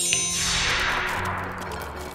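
A bright chime sound effect, then a whoosh that fades away over about a second and a half, over soft background music.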